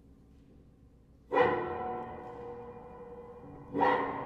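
Grand piano played with one hand inside on the strings and the other on the keys: two sudden loud struck sounds, about a second in and again near the end, each left ringing on with many overtones and slowly dying away.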